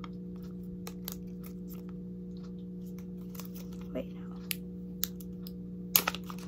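Protective plastic film being peeled off a new Apple Watch: faint scattered crackles and ticks, with a sharper click near the end.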